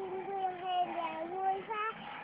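A five-year-old girl singing a Vietnamese children's song without accompaniment, holding one long note, then a short note near the end.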